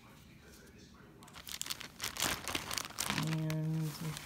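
Clear plastic bag crinkling and rustling as it is handled, starting about a second in. Near the end a woman's voice holds one steady hum.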